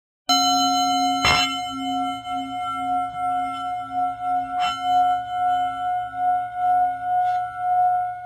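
Singing bowl ringing with a slow, pulsing waver in its sustained tones, struck sharply about a second in and again about four and a half seconds in.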